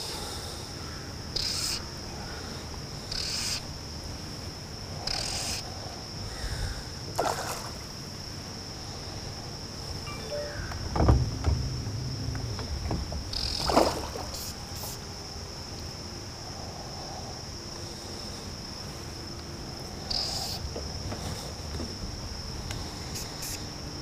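Insects chirring steadily in one high-pitched drone. A few brief scrapes and rustles break through, with a low knock about eleven seconds in.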